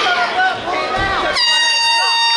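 Voices shouting, then about a second and a half in a loud, steady horn starts and holds to the end, signalling the end of the round.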